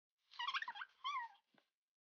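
Two short, high-pitched wavering vocal calls, the second shorter, followed by a single soft knock.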